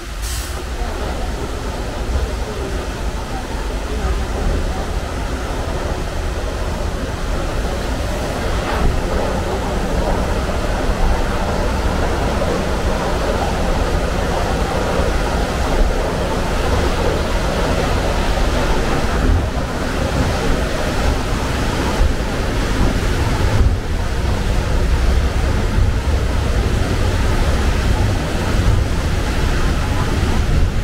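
Log flume lift hill running: a steady low mechanical rumble from the conveyor hauling the boat uphill, mixed with the rush of water pouring down the flume beside it. It grows a little louder over the first few seconds. There is a single sharp click just after it begins.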